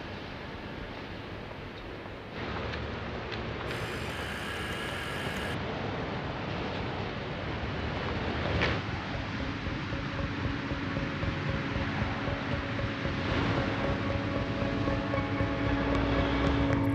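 Steady rushing ambient noise that grows louder, with a brief swell just before the middle. Sustained musical tones come in about halfway through and build toward the end.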